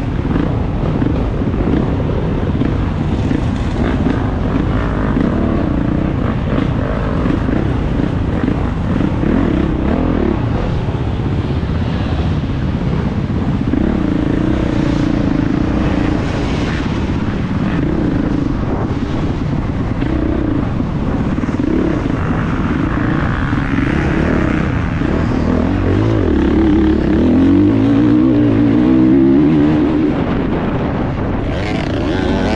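Off-road motorcycle engine heard from the rider's helmet camera, revving up and down in short bursts over a slow, rutted trail, then revving up and running harder and louder near the end as the bike speeds up on open ground.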